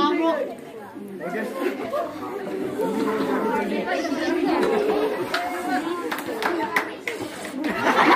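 Many voices talking at once: a crowd of schoolchildren and onlookers chattering, with no single speaker standing out.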